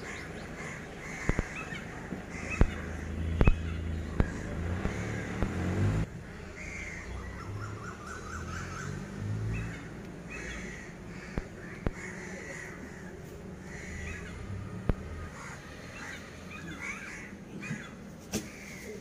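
Crows cawing on and off, with a few sharp clicks scattered through.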